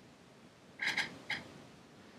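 Three short, soft clicks in quick succession about a second in, as of keys pressed on a laptop to advance a slide.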